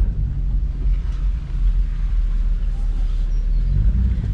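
4x4 truck driving on a sandy track, heard from inside the cab: a steady low engine and road rumble.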